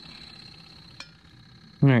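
A single sharp metallic click about a second in, as orange-handled pliers grip the rim of a small metal cooking pot, over a faint steady hiss and a thin high whine.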